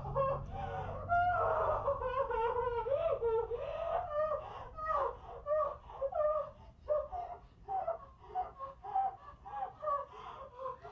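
A woman crying: high, wavering wails that break into short, choked sobs in the second half.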